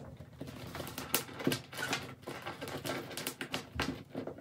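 Stiff crinoline mesh being handled and pinned, with irregular small crackles and clicks as it is folded and pressed down.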